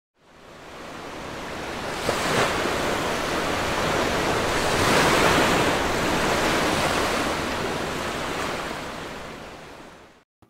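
Ocean surf washing onto the shore, fading in at the start and out near the end, with surges about two and five seconds in.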